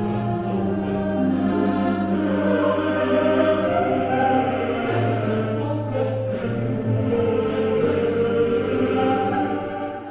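A choir singing a slow sacred piece, with long held low notes sustained underneath the voices.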